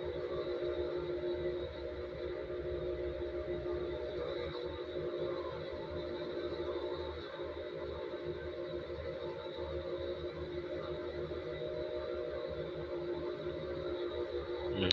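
Ambient background music of steady, sustained tones.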